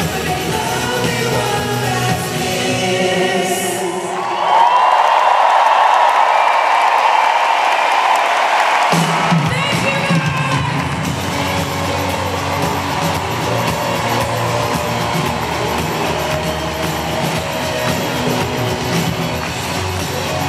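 Live pop-rock concert heard through a compact camera's microphone in an arena: a female lead singer with electric guitar and full band, over a cheering crowd. About four seconds in, the bass drops out for some five seconds, leaving loud singing over the crowd. Then the full band comes back in suddenly.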